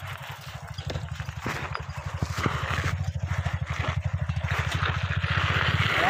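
A bicycle ridden over a rough dirt track: a steady low rumble that pulses rapidly and evenly, with bursts of hiss that grow louder near the end.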